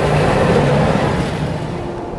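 Train rumbling past, a broad whooshing rumble that peaks about half a second in and then slowly fades.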